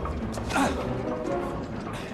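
Film score music over a hand-to-hand scuffle, with a brief creak about half a second in.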